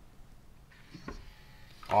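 Gun Box aluminium handgun safe unlocking for a newly programmed fingerprint: a faint click about a second in, then a soft rush as the lid swings up on its hydraulic struts. A voice says "awesome" at the very end.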